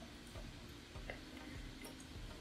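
Quiet room tone with a faint steady hum and a few faint, scattered ticks.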